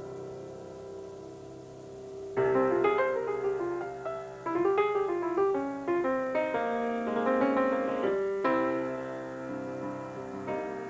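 Grand piano played live in a slow, gentle piece. A held chord dies away for the first couple of seconds, then a flowing run of notes begins, and a fresh chord is struck near the end.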